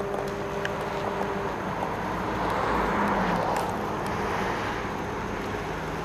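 A vehicle passing by: road and engine noise that swells to a peak about halfway through and then fades.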